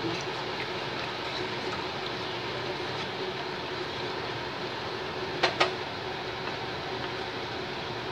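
Wooden spatula stirring rice in a pan of liquid over a steady background hum and hiss, with two short knocks of the spatula against the pan about five and a half seconds in.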